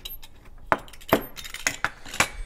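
Metal pizza cutter rolled back and forth over a cut-resistant glove on a fake finger, its wheel and handle clicking and clinking on a bamboo cutting board, with several sharp clicks in the second half. The blade makes multiple passes without cutting through the glove.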